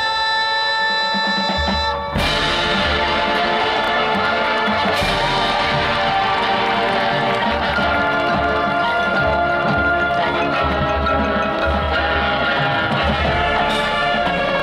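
High school marching band playing live, with horns, drums and front-ensemble mallet percussion: a held chord, then about two seconds in a sudden loud full-band entrance that carries on over a steady low beat.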